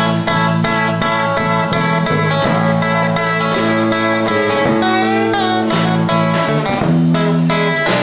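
Instrumental break of a song played live by an acoustic band: steadily strummed acoustic guitar chords under a melody line that bends upward about five seconds in.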